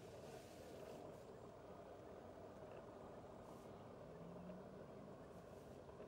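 Near silence: a faint, steady low background rumble.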